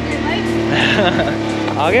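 The 1983 Maruti 800's small petrol engine running at a steady, even hum, heard from inside the car's cabin.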